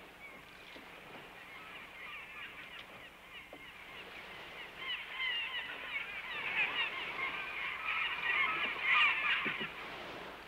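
A flock of gulls calling: many short, overlapping cries, faint at first, that thicken and grow louder from about halfway through and are loudest near the end.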